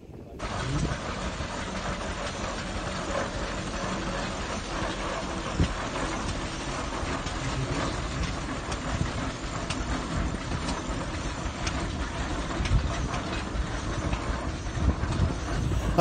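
Case steam traction engine running as it moves slowly along, a steady mechanical sound.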